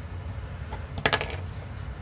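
A short cluster of small, sharp clicks about a second in, from small hardware being handled on a workbench: a hex driver with an M2 screw in a plastic 3D-printed camera bracket, and the micro camera being picked up. A faint low room hum runs underneath.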